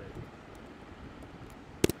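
A single sharp key click on a MacBook Air keyboard near the end, over a faint steady hiss.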